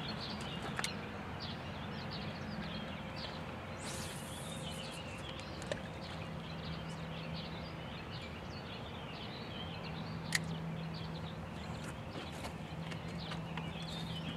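Outdoor ambience of many short bird chirps over a steady faint low hum, with a brief hiss about four seconds in and a single sharp click about ten seconds in.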